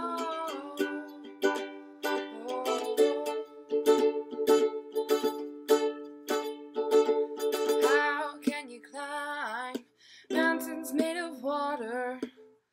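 Soprano ukulele strummed in a steady rhythm, its chords ringing and changing every few seconds. In the second half a voice sings a wordless, gliding line over it, with a brief break about ten seconds in.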